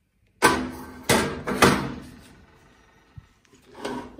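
Metal clanking as a springform cake pan is set onto a wire oven rack: three sharp clanks roughly half a second apart, each ringing briefly, then a small knock near the end.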